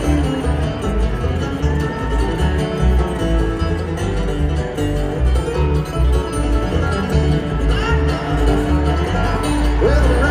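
A bluegrass band playing an instrumental passage live, with two flat-top acoustic guitars, a five-string banjo and an upright bass keeping a steady bass line.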